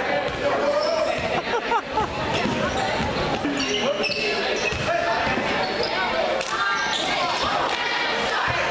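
Basketball dribbled on a hardwood gym floor, a run of bounces in a large echoing hall, with players' and spectators' voices throughout.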